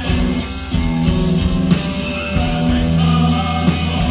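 A rock band playing live: electric guitars, bass guitar and a drum kit with cymbals, with a sung vocal.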